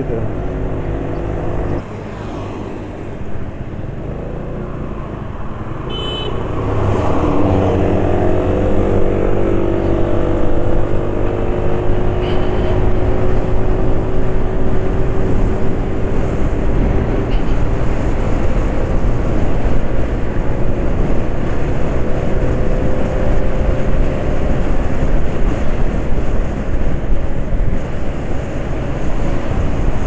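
A Yamaha scooter's single-cylinder engine, heard from the rider's seat. About six seconds in it accelerates with a rising pitch, then holds a steady cruising note, with road and wind noise on the microphone.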